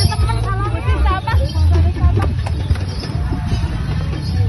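Loud music with a heavy bass beat, mixed with a babble of voices.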